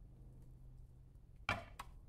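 A solid cast-aluminium cube set down on the platform of a digital kitchen scale: a sharp knock about one and a half seconds in, then a smaller click, over a faint low hum.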